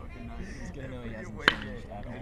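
A single sharp crack of a pitched baseball at home plate about a second and a half in, over distant voices and chatter.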